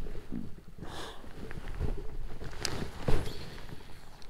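Scattered knocks and clicks of fishing gear being handled aboard a kayak, with the loudest knock about three seconds in.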